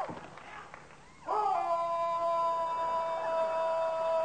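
Two high notes sounded together, sliding up into pitch about a second in and then held steady for nearly three seconds, after a brief quieter stretch.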